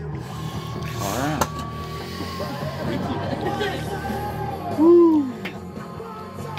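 A man's wordless groans and exclamations of pain as a red wasp stings his knuckle, over background music; the loudest is a short rising-and-falling cry near the end.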